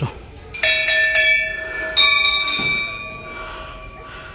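Hindu temple bells struck three times, about half a second, one second and two seconds in, each stroke ringing on and slowly fading.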